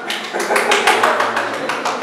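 Quick, uneven run of sharp hand claps from a small group of people, about seven or eight a second, starting a moment in, over a murmur of voices.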